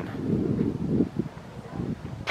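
Wind buffeting the microphone: an uneven low rumble that eases off about a second in, leaving faint outdoor air noise.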